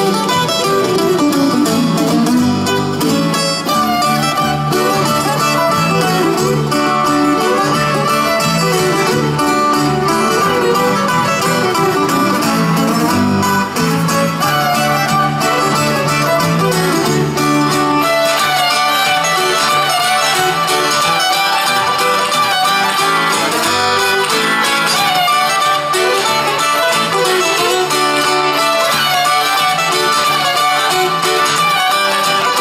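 Live folk-rock band playing an instrumental tune: fiddle with acoustic guitar and other plucked strings, running on steadily.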